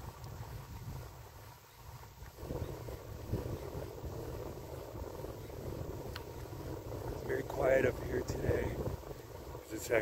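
Wind rumbling on a phone microphone while riding a bicycle: a steady low rumble, with a short stretch of voice about eight seconds in.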